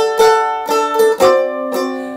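F-style mandolin strummed in a slow, even rhythm, about two strokes a second, each chord ringing on until the next.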